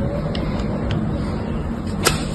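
Snap-off utility knife blade carving into a lump of crumbly dried soap, with a few sharp crunchy clicks as bits of soap break away, over a steady low hum.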